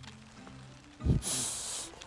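Soft background music, then about a second in a short airy hiss with a low thump at its start, lasting just under a second: a cartoon sound effect for a stink cloud wafting from a pot of soil.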